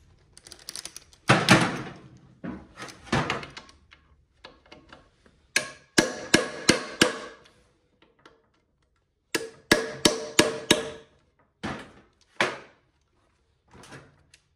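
A hammer striking a steel tool seated in a tight bolt inside an automatic transmission's bell housing, trying to shock the bolt loose. The blows come in two quick runs of about six, each strike ringing metallically, then a few single blows, after two longer clattering noises about one and three seconds in.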